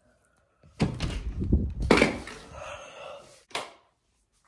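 A series of thumps and knocks: a thump about a second in followed by rumbling, a louder knock about two seconds in, and a short knock near the end.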